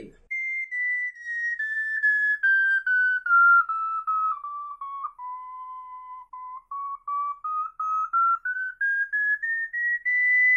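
Ocarina playing a chromatic scale: single clear notes stepping down in even half-steps through about an octave, a held low note, then stepping back up to the top note.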